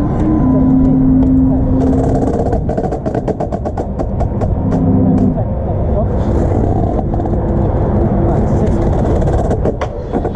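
Amplified show soundtrack of held tones that step to a new pitch every second or two, over a heavy low rumble, with scattered short clicks and taps; no drumming.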